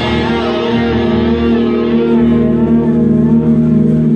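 Live rock band playing loud through amplifiers: electric guitar and bass holding long, ringing notes, some of them wavering in pitch.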